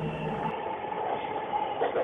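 Inside a moving train carriage: the steady running rumble and hum of the train.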